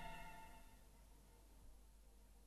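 The final chord of a mariachi band's recording dies away over the first half-second or so, a single tone lingering a moment longer, then near silence as the track ends.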